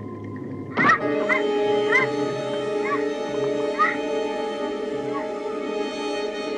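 Film score: a sudden loud hit about a second in, then held orchestral tones, with a series of short, arching high cries about once a second over the top.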